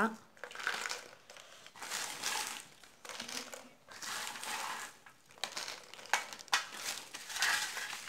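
Newspaper crinkling in repeated bursts as a hand scoops dried vathal pieces off it and drops them into a plastic jar. A few sharp clicks come after the middle as the hard dried pieces hit the jar.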